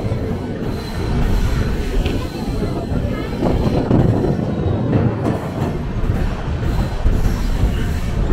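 Steady running noise of a moving passenger train, its wheels rolling on the rails, heard from inside the coach.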